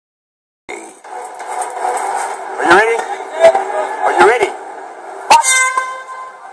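Audio from a mixed martial arts broadcast playing through a computer speaker: a man's voice making two long, drawn-out calls over steady arena crowd noise, with a sharp knock about five seconds in.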